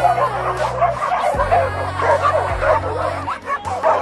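A pack of many dogs barking and yipping all at once, an overlapping chorus of short excited calls as they wait for a ball to be thrown.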